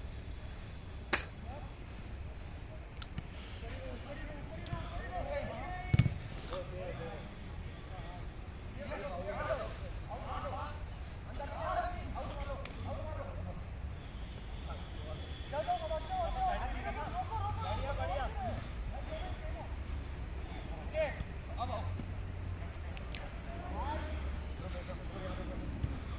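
Football kicked during a five-a-side game on artificial turf: two sharp knocks, the louder about six seconds in, among the players' distant shouts and calls across the pitch.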